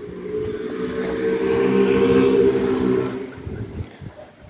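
A motor vehicle engine passing by: a steady hum that swells to its loudest a little past the middle, then fades away near the end.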